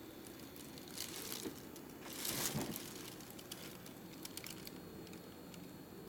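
Faint steady buzz of a Schick Hydro 5 Power Select razor's vibration motor, switched on. Plastic sheeting crinkles about a second in and again around two to two and a half seconds in.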